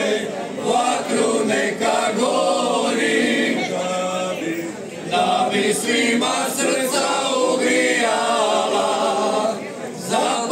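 Men's folk singing group singing a traditional Croatian folk song a cappella, several male voices together with long held notes.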